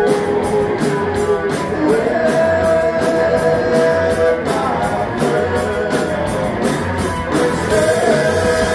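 Live rock band playing: electric guitars holding sustained notes over a drum kit, with cymbal strikes keeping a steady beat of about three to four a second.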